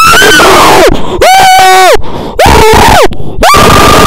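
A high-pitched voice screaming 'AAAA' in four loud, distorted bursts, each held on a note and then dropping sharply in pitch.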